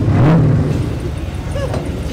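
A motor vehicle engine running, its pitch rising and falling once in a brief rev about a quarter of a second in, over outdoor crowd noise.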